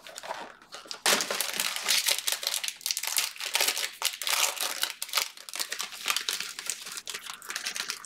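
A shiny foil trading-card pack wrapper being torn open and crinkled by hand: a dense, crackling rustle that starts about a second in and goes on unbroken.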